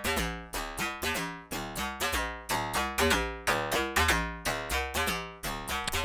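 Karplus-Strong plucked-string tones from an Intellijel Rainmaker eurorack module's comb resonator, each struck by a short burst of filtered white noise. A sequence of sharp, guitar-like plucked notes, about two a second at changing pitches, each ringing briefly and dying away.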